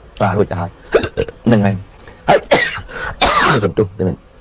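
A man talking in Khmer, with a few breathy, noisy syllables about two and a half to three and a half seconds in.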